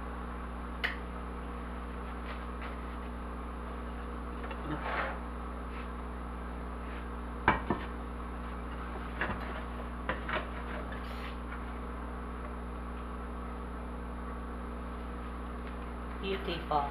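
A few separate knocks and clinks of a ceramic plate against a cast-iron skillet as a cake is flipped out of the skillet onto the plate. The sharpest knock comes about halfway through, over a steady background hum.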